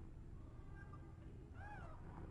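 Nursing newborn kitten calling faintly: a thin squeak about a second in, then a short high mew near the end that rises and falls.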